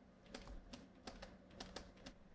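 Stylus pen tapping and scratching on a tablet screen while handwriting, a quick irregular run of faint clicks.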